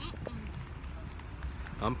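Steady low rumble of outdoor background noise, with a man's voice starting again near the end.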